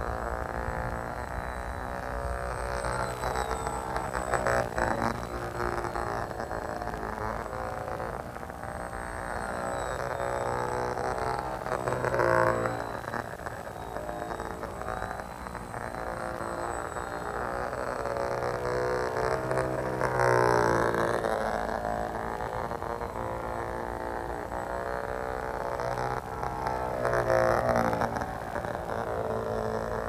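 Electric motor and propeller of a small foam RC biplane buzzing in flight, its pitch rising and falling as the throttle changes, with a few louder swells as it passes.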